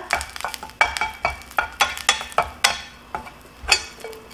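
Ginkgo nuts stir-fried in oil in a nonstick frying pan, pushed about with a wooden spatula: light clicks and knocks a few times a second as the nuts roll against the pan, over a faint sizzle, with a louder knock near the end.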